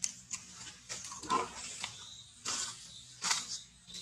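Close, small sounds of macaques nursing and feeding: irregular short clicks and rustles, the loudest a little over a second in.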